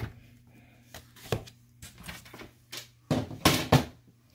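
Handling noises of card stock on a craft table: a light tap about a second in, then a short loud burst of paper rustling and knocks near the end as the folded card base is lifted off the paper trimmer and set down.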